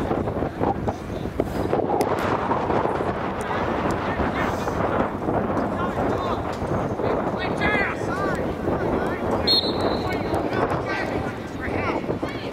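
Many overlapping voices calling and shouting during a lacrosse game, with wind buffeting the microphone. A short, steady, high whistle blast sounds about two-thirds of the way in.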